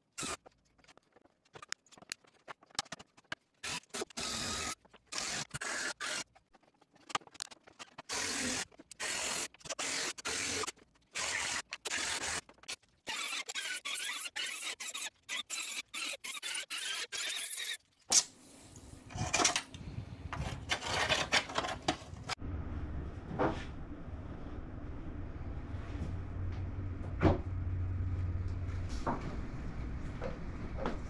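Handheld rotary tool cutting through a plastic truck grille, running in short on-off bursts with a squeal as the wheel bites the plastic. From about 22 seconds in, this gives way to a steady low hum with scattered knocks.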